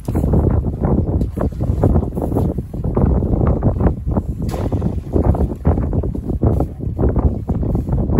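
Strong wind buffeting the microphone: a loud, gusty rumble that rises and falls without pause.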